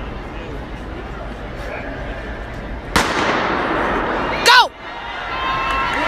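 A starting pistol fires once about halfway through, a sharp crack that rings out through a large indoor hall over steady crowd murmur. A loud shout with falling pitch follows about a second and a half later.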